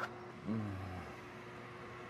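A steady low machine hum, with a short voiced 'uh' from a man about half a second in.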